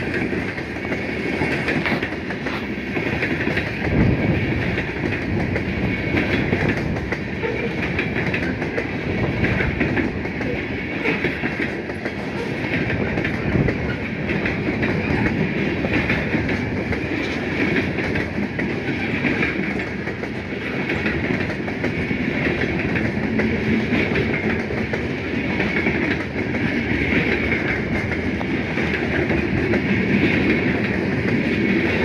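Loaded covered hopper cars of a freight grain train rolling past at steady speed: continuous rumble of steel wheels on rail with frequent knocks as the wheels cross rail joints.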